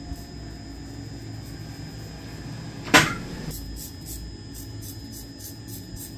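Straight razor scraping short stubble off a scalp in quick, faint strokes, a few a second. About halfway through there is one loud, brief swish.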